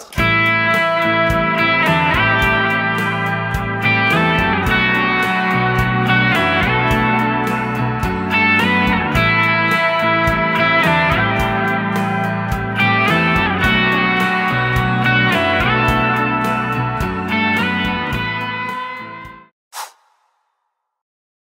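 Electric guitar (Fender Stratocaster) playing a pentatonic lead phrase built on slides and vibrato, first up to the 8th and 10th frets, then the same shape a whole step higher up to the 12th. Under it runs a looped backing of guitar arpeggios and bass. The music cuts off shortly before the end.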